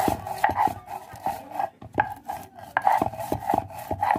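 Stone pestle (nora) rubbed back and forth on a sil grinding slab, grinding soaked chana dal into a coarse paste: repeated rasping strokes with sharp clicks a few times a second.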